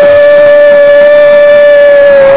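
Football commentator's excited cry, held loud and unbroken on one steady pitch.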